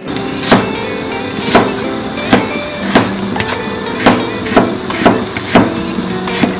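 A chef's knife slicing garlic cloves, its blade knocking sharply on a plastic cutting board about nine times at an uneven pace of one or two cuts a second, with soft background music.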